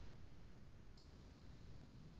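Near silence: room noise with a single faint, sharp click about a second in, a computer mouse clicking.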